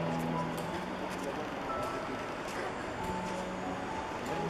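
Soft background music of long held notes over steady city street and traffic noise.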